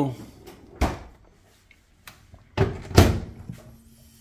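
Samsung Bespoke over-the-range microwave door clicking open about a second in, then a few knocks and the door shutting with a loud knock near three seconds.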